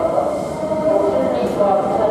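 Busy rail platform ambience: a red Keikyu commuter train at the platform, with the steady murmur of waiting passengers' voices.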